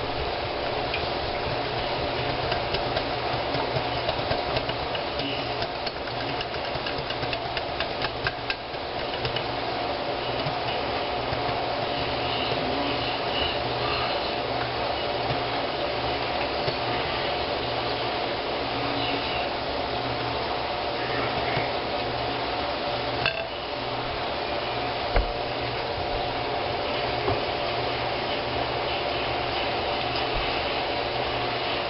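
A metal spoon and then a wire whisk beating an egg-and-milk custard in a glass bowl, rapid clinking and tapping against the glass, densest in the first several seconds. A steady hum runs underneath.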